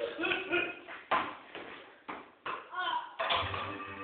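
Voices talking, broken by a few sharp knocks, then music starting about three seconds in.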